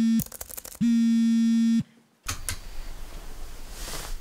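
Smartphone buzzing on vibrate for an incoming call: a steady buzz with a short rattle before it ends just after the start, and a second buzz lasts about a second. Then it stops, and faint room noise follows with a couple of light clicks.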